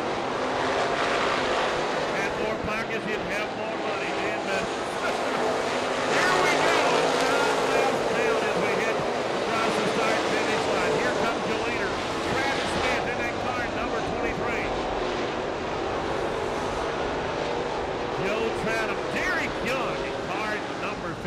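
Dirt-track race car engines running steadily as the cars circle the track, with people's voices heard over them at times.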